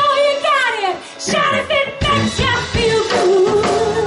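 A live cover band playing pop-rock, with a woman singing lead. Near the start the bass and drums drop out while her voice slides downward, and the full band comes back in after about a second.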